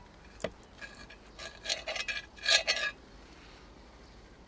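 Table knife and fork cutting a toasted sandwich in a cast iron skillet: a sharp click of metal on the pan about half a second in, then two short runs of scraping and sawing as the knife goes through the crisp toast and across the pan.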